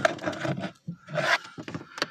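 Rubbing and rustling handling noise in irregular scrapes with short quiet gaps, as a hand moves a plastic action figure close to the phone.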